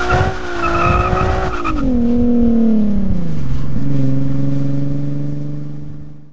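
Nissan 370Z's 3.7-litre V6 running under load, its pitch easing down about two seconds in as the throttle comes off, then dropping to a lower steady note about three and a half seconds in, as from a shift up. A high wavering squeal sits over the engine for the first two seconds.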